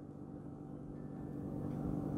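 Faint, steady low room hum with a few faint steady tones, in a pause between speech.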